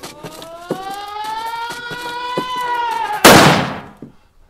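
A held tone rises slowly for about three seconds, with faint clicks along the way. It is cut off by a single very loud gunshot that rings out in the room.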